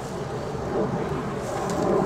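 Outdoor background noise: a steady rumbling hiss of wind on the microphone, with no distinct event standing out.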